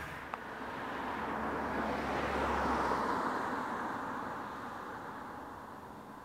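A car passing on the road: tyre and engine noise swells to a peak about two and a half seconds in, then fades away.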